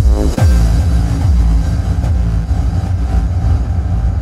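Hardstyle electronic dance track produced in FL Studio. A heavy kick drum sweeps down in pitch about half a second in, then a pulsing bass line continues.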